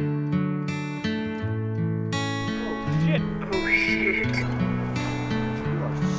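Sentimental acoustic guitar music, one note after another in a slow melody. From about halfway through, background noise comes in under it, with a short high cry from a voice.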